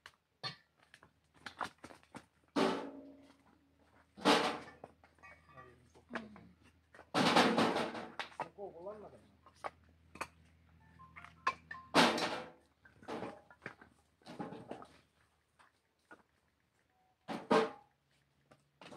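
Split firewood logs being handled and stacked on a woodpile: separate wooden knocks and clatters every few seconds as pieces land on one another, with a longer run of clattering about seven seconds in.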